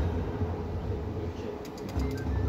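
Low, steady rumbling hum at an idle slot machine between spins, with a few faint clicks near the end.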